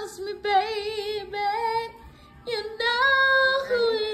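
A high female voice singing unaccompanied, holding long notes, with a short breath pause about two seconds in.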